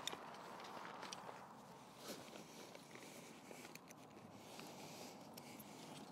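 Near silence with faint rustling and a few light clicks of tent fabric and fibreglass poles being handled.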